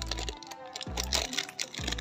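Plastic packaging crinkling and crackling as it is handled, over background music with a deep beat about once a second.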